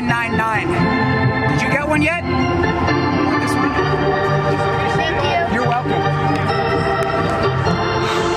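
Organ music playing held chords over a moving bass line, with brief snatches of voice in the first couple of seconds.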